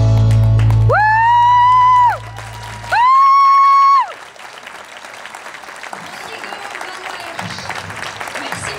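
Latin dance music ends on a sustained chord, followed by two long high held notes, each sliding up at its start. Audience applause then rises and continues.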